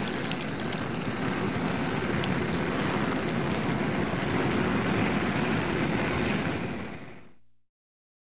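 Fire sound effect for a flaming logo: a steady rush of burning flames with many small crackles, fading out about seven seconds in.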